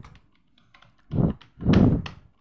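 Typing on a computer keyboard: a few faint key taps, then two louder clatters in the second half.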